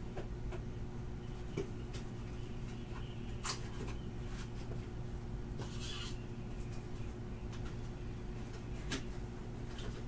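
A steady low electrical hum, with a handful of light knocks and clatters scattered through it and a brief rustle about six seconds in: cards and boxes being handled and put away.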